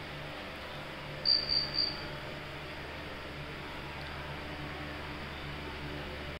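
Three short high-pitched chirps in quick succession about a second in, over a low steady hum of room noise.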